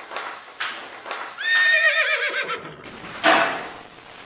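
A horse whinnying: one quavering call that falls in pitch, after a run of evenly spaced knocks. A loud burst of noise follows near the end.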